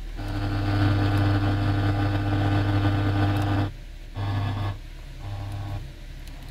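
Toyota Corolla factory radio head unit on the AM band, buzzing steadily through its speakers while being tuned between stations. The buzz cuts off suddenly about three and a half seconds in, then comes back in two short bursts as the tuning steps on.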